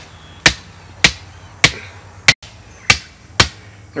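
A hammer striking the top of a rigid PVC fence post, six blows about two every second, driving it into the ground. The post has struck solid rock and is not sinking to its 16-inch depth mark.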